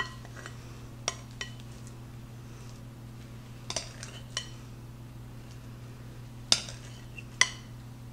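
A metal spoon and spatula clink irregularly against a glass mixing bowl and a glass baking dish while thick mascarpone cream is scooped and dolloped, about nine short ringing clinks in all. A low steady hum runs underneath.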